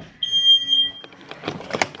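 Smoke alarm sounding one long, high-pitched beep, set off by smoke from burnt bread. In the second half come a clatter of knocks and rattles as a window is pushed open.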